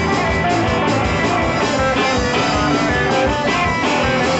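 A live rock band playing steadily: electric guitar over a drum kit, in a 1960s-style psych-pop vein.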